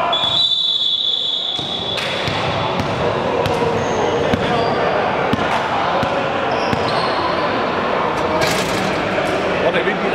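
A referee's whistle blows one long steady blast, about a second and a half. Then comes indistinct chatter echoing in a large gym, with scattered ball bounces and short sneaker squeaks on the hardwood floor.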